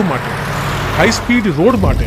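Suzuki car driving at speed on a highway: steady rushing road and wind noise over a low rumble, with a voice coming in about a second in.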